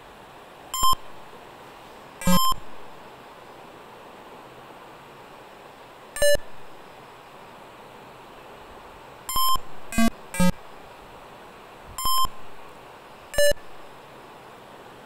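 Electronic sound-effect beeps from a browser version of Atari Breakout: eight short blips at irregular intervals and a few different pitches, some low and some higher, as the ball hits the paddle and breaks bricks.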